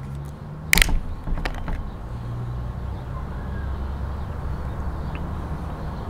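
A plastic screw cap on a bottle of Prime hydration drink cracking open with one sharp click about a second in, followed by a couple of lighter clicks, over a steady low background rumble.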